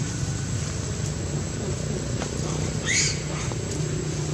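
A baby macaque gives one short, high squeal about three seconds in, over a steady low rumble.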